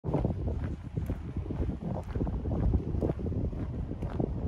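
Wind buffeting the microphone: an uneven, gusty rumble.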